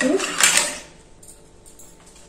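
Four or five ice cubes tipped from a steel bowl into a steel mixer-grinder jar, clattering against the metal about half a second in, then settling quietly.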